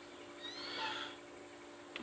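A brief, faint animal call about half a second in, over a steady low hum.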